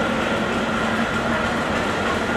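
Diesel-hauled passenger train approaching a station, its locomotive and wheels on the rails making a steady rumble with a constant low engine tone.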